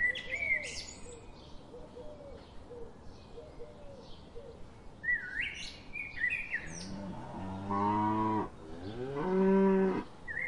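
Cattle mooing twice near the end: a long low moo, then a higher-pitched, louder one. Birds chirp briefly at the start and again about midway.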